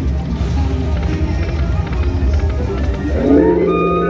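Buffalo Link video slot machine's electronic jingle music playing as the reels spin, over a steady low hum. A burst of rising chimes starts about three seconds in as the reels settle on a win.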